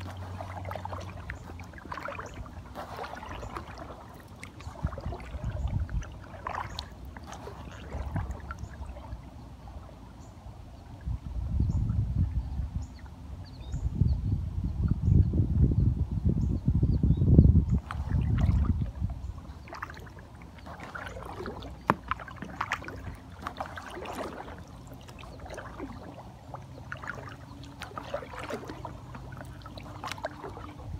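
Kayak paddle strokes: water splashing and dripping off the blades and lapping at an inflatable kayak's hull, every second or two. A louder low rumble runs through the middle.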